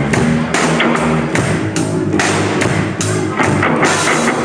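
Loud rock or metal band music: electric guitar and drums playing steadily.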